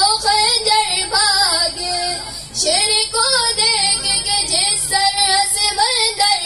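A boy singing a devotional poem solo into a microphone, in held, wavering melodic phrases, with a short breath break about two and a half seconds in.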